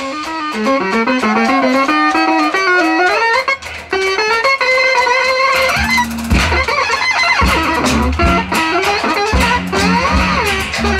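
Noise rock band playing live. For the first half a fast, wavering line of high notes with pitch bends plays over a sparse low end; about six seconds in, bass and drums come back in at full weight.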